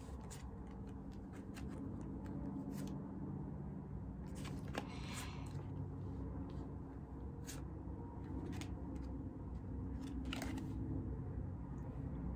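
Playing cards being dealt one at a time from the hand onto a table: faint, irregular soft clicks and flicks of card on card and cloth over a low steady room hum.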